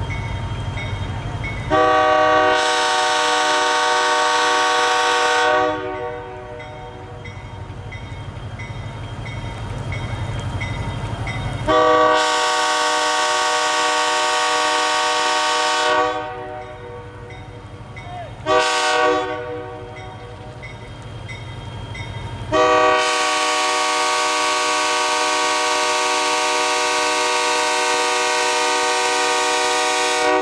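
EMD F40PH diesel locomotive's multi-tone air horn sounding the grade-crossing signal: two long blasts, a short one, then a final long one. Between the blasts the locomotive's diesel engine rumbles steadily as the train approaches.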